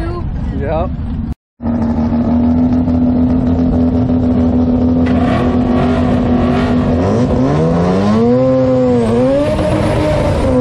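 Mazda RX-7's 13B twin-rotor engine held at a steady high rev in the burnout box, with tyre-spin noise joining in about halfway through; near the end the revs rise and dip in several sweeps.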